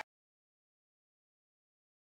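Silence: the soundtrack is blank, with the earlier sound cut off right at the start.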